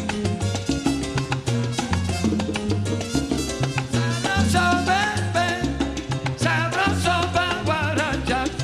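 Recorded salsa music in son montuno style. A bass line repeats in short notes under hand percussion, and a wavering lead melody comes in about halfway through.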